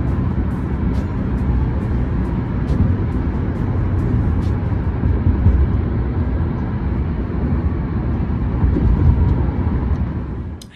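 Loud, steady low rumble of a moving car heard from inside the cabin: engine and road noise while riding in the back seat.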